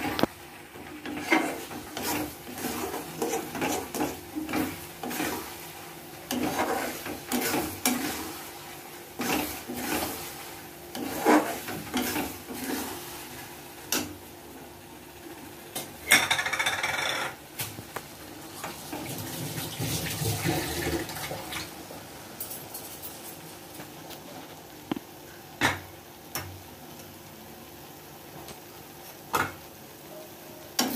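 A flat steel spatula scraping and knocking against a steel kadhai while stirring thick semolina halwa. The scrapes come several times a second for the first dozen seconds, then only now and then. A brief hiss comes about halfway through.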